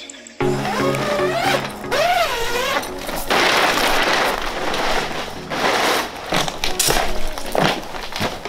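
Background music with gliding pitched lines, then about three seconds in a loud rustle of the portable garage tent's fabric door being pulled back. A few sharp knocks follow near the end.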